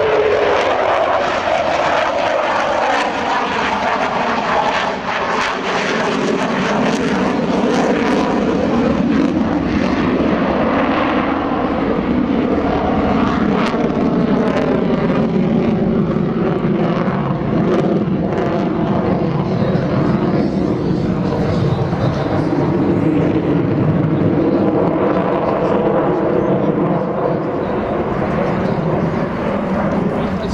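Jet noise from a Sukhoi Su-30MKM's twin AL-31FP afterburning turbofans during an aerobatic display: a loud, continuous rush whose tone sweeps slowly down and back up several times as the fighter manoeuvres overhead.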